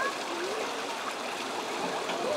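Water running and splashing steadily into the basin of a children's water-play table.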